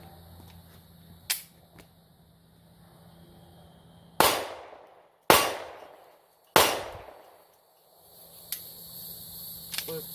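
Three 9mm pistol shots from a Springfield Hellcat, fired a little over a second apart, each trailing off over about half a second. A single sharp click comes a few seconds before the first shot.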